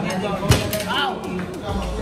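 Men's voices talking and calling out, with one sharp knock about half a second in.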